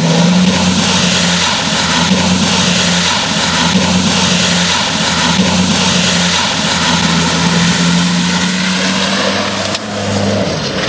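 Mitsubishi Pajero's engine running steadily under load as the 4x4 ploughs through deep muddy water, with the water splashing and surging against its front. The engine note holds nearly level, dipping slightly now and then.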